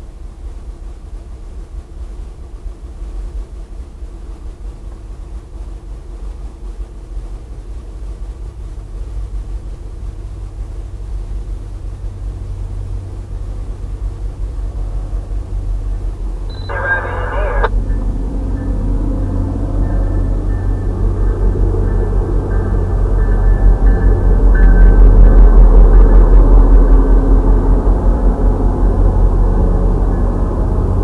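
MBTA diesel commuter train approaching and passing with a low rumble that builds steadily. A horn blast of about a second comes about halfway through, and the rumble is loudest as the bi-level coaches go by near the end.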